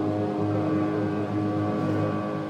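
Organ holding a sustained chord in a gap between sung phrases of a hymn.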